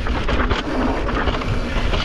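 Wind buffeting the microphone while moving at speed, with a steady low rumble and scattered clattering.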